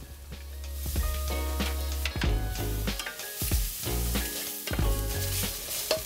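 Shiitake mushrooms, onion and Chinese sausage sizzling in a hot stainless steel frying pan while a wooden spatula stirs them, scraping the pan several times.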